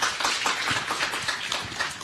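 Audience applauding: many hands clapping at once in a dense, irregular patter.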